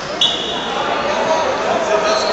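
Table tennis ball clicking off bat and table against spectators' chatter in a large, echoing sports hall, with a short high squeak about a quarter second in.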